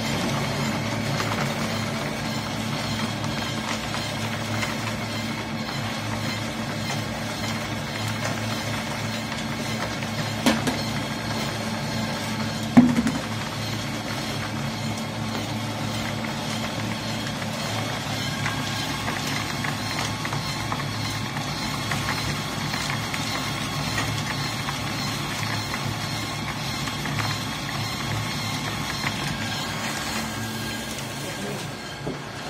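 Coal dust pellet press running with a steady hum, with two sharp knocks about ten and thirteen seconds in.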